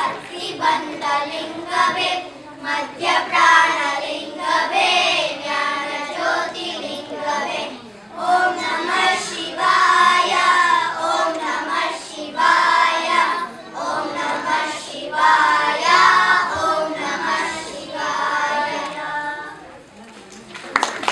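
A group of children singing a song together in unison; the singing fades out near the end.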